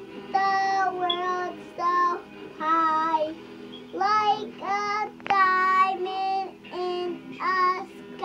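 A young child singing alone in a high voice: a string of short held notes, the pitch stepping up and down from note to note.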